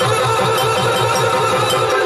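Yakshagana percussion accompaniment: maddale and chende drums played in an even rhythm of about four strokes a second, with metallic ringing sustained over the drumming.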